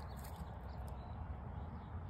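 Faint steady outdoor background noise, with no distinct snip or knock standing out.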